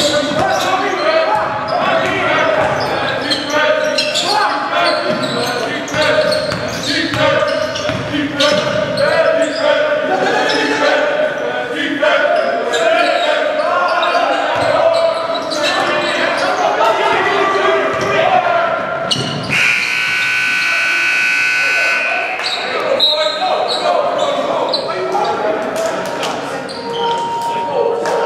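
Basketball being dribbled and bounced on a hardwood gym floor, with players' and spectators' voices echoing in a large hall. About twenty seconds in, the scoreboard horn sounds steadily for roughly two and a half seconds.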